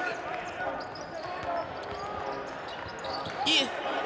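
Basketball arena ambience: basketballs bouncing on the court amid echoing voices in a large hall, with a brief hiss about three and a half seconds in.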